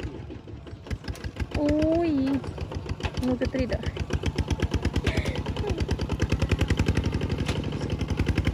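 Single-cylinder diesel engine of a two-wheel walking tractor running under load while it pulls a plough: a steady, rapid chugging of about ten beats a second. The chugging grows louder in the second half.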